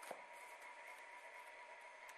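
Near silence: faint steady hiss of room tone, with a faint high hum.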